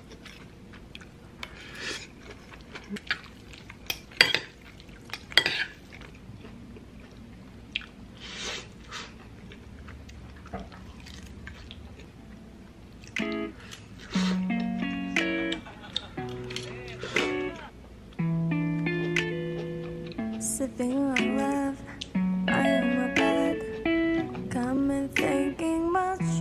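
A metal fork and knife clink now and then against a ceramic plate while pasta is eaten. About halfway through, background music with guitar comes in and carries on louder.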